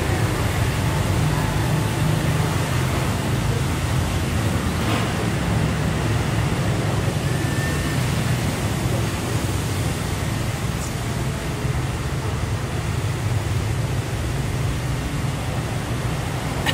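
Steady street traffic noise: a continuous low rumble of vehicles going by.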